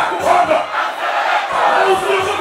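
Large concert crowd shouting and singing together loudly, with a faint music beat under it.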